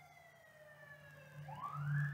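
Faint emergency-vehicle siren in a wail: one slow falling sweep in pitch, then a quick rise about three-quarters of the way in, levelling off at the end.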